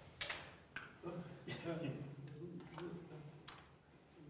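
Faint speech in a room, low murmured voices, with a few light sharp clicks scattered through it.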